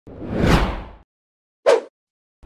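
Whoosh transition sound effect: a rush of noise that swells and fades within the first second, followed by a short, sharp hit near the end.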